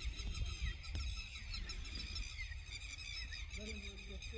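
Birds chirping and twittering, a dense run of short high calls, over a steady low rumble. Near the end there is a lower call.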